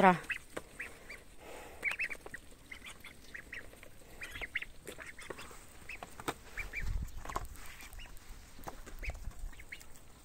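Ducklings feeding, giving short high peeps scattered throughout, with a dull low rumble about seven seconds in.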